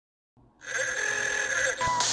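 Silence, then about half a second in a loud, distorted sound with steady high tones. Near the end it gives way to a loud, even hiss of TV-static noise.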